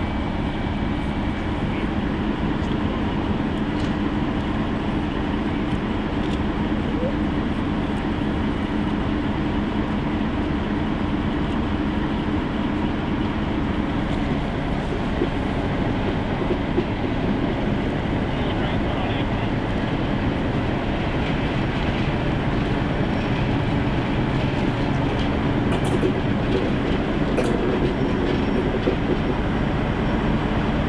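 Ex-ČD 'Goggle' diesel locomotive running with a steady engine drone as it moves slowly forward hauling its train, growing a little louder near the end as it comes closer.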